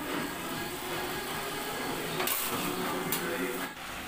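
Hot oil sizzling and bubbling steadily in an aluminium kadai as achu murukku batter fries on the metal mould, with two sharp clicks after the middle.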